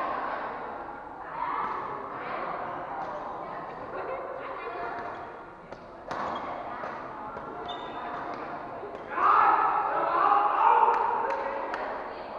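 Badminton rally in an echoing sports hall: sharp racket hits on the shuttlecock and footfalls on the hard floor, over a steady background of spectators' voices that grows louder about nine seconds in.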